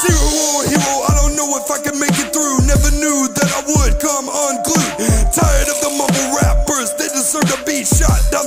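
Hip hop music: a beat with regular deep bass hits that slide down in pitch, under a vocal line.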